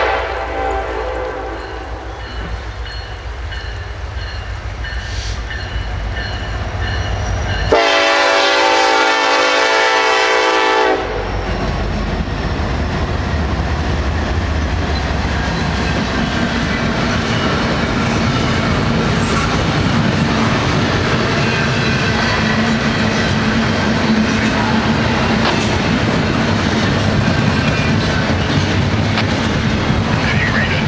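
A diesel-hauled intermodal freight approaches with a low, steady rumble. About eight seconds in, the lead locomotive sounds one long blast of its Nathan K5LLA five-chime air horn, lasting about three seconds. The locomotives then pass close by, followed by the steady rumble and clickety-clack of double-stack container cars rolling past.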